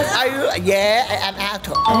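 An excited woman's voice exclaiming over light background music with a steady beat, and a short bell-like chime near the end.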